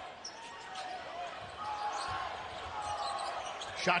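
A basketball bouncing on a hardwood court, a few soft thuds, under a low murmur of crowd voices in an arena.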